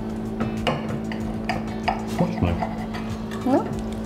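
A kitchen knife and cutlery knocking and clinking irregularly against plates and a cutting board, over a steady low hum.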